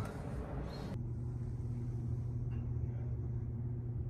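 Steady low mechanical hum. During the first second a rushing noise lies over it, then cuts off abruptly.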